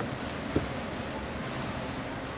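Large kitchen knife slicing through a slab of raw pork belly on a plastic cutting board, with one sharp knock of the blade against the board about half a second in, over steady background noise.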